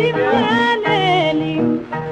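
A female rebetiko singer on a 1934 recording sings the 'yaleli' refrain in long, winding melismas over a small instrumental accompaniment. Her voice stops a little past halfway, and the instruments carry on alone.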